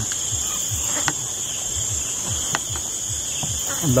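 Crickets trilling in a steady, unbroken high-pitched chorus, with a couple of faint clicks and low handling knocks.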